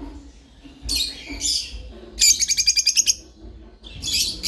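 Peach-faced lovebirds (lutino yellow-and-red birds) calling: two short, shrill calls about a second in, then a rapid chattering run of about ten notes lasting nearly a second.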